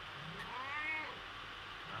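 Persian cat meowing once, a single call that rises and then falls in pitch, lasting about half a second: the cat calling for its owner.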